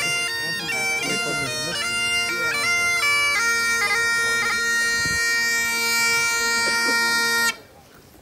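Bagpipes playing a tune over their steady drones, the melody moving quickly at first and then settling on one long held note, with everything cutting off sharply about a second before the end.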